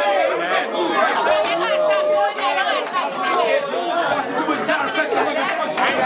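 Crowd chatter: many voices talking over one another, with a few sharp short sounds among them.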